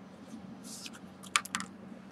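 Faint rustling, then a quick run of small sharp clicks about a second and a half in, as a crumpled cigar wrapper is handled.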